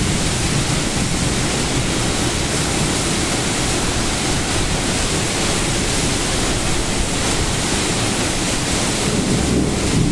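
Violent storm wind and heavy rain: a loud, steady rush of noise with wind buffeting the microphone.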